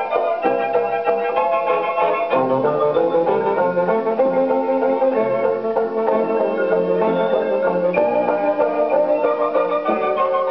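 Orchestral fairground-fantasy light music playing from a 78 rpm shellac record on a gramophone, continuous throughout.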